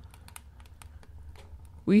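Faint, irregular light clicks over a low steady hum during a pause in a man's narration; his voice starts again near the end.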